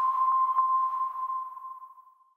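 A single electronic ping of a transition sound effect: one clear, pure tone that fades away over about two seconds.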